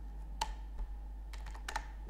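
A few computer keyboard key clicks: one about half a second in, then a quick run of several near the end, over a low steady hum.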